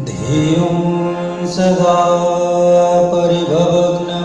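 Hindu devotional mantra chanting: long held sung notes that glide from one pitch to the next over a steady drone. A new chanted phrase begins right at the start.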